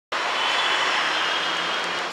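Steady rushing noise of street traffic, cutting off suddenly at the end.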